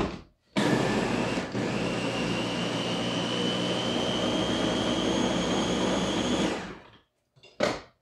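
Small countertop blender blitzing fruit. It starts with a click just before the motor, runs steadily for about six seconds with its whine rising slightly in pitch, then stops. A short knock comes near the end.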